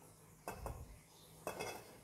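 Two light metallic clinks about a second apart, the second ringing briefly: a grinder dosing cup knocking against the rim of a stainless steel espresso-maker coffee basket while ground coffee is tipped in.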